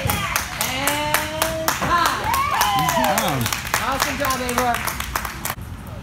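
A small group clapping quickly and steadily and cheering with long held shouts. It all cuts off about five and a half seconds in.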